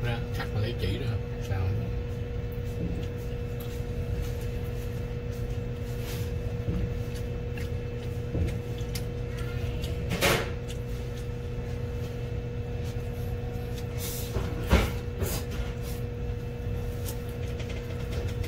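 Chopsticks knocking a few times against a ceramic plate while eating noodles, over a steady low electrical hum.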